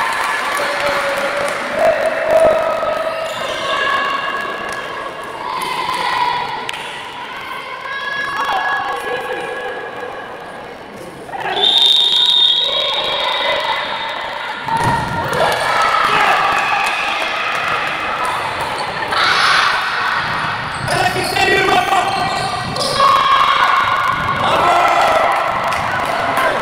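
Indoor handball match: the ball bounces on the wooden court while players' and spectators' voices call out and echo in the hall. A referee's whistle sounds briefly about halfway through.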